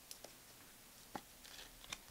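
Near silence, with a few faint, short clicks of trading cards being handled and shuffled.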